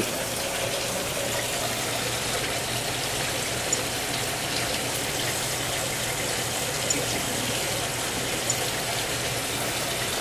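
Steady hiss of background noise with a low hum underneath and a few faint clicks.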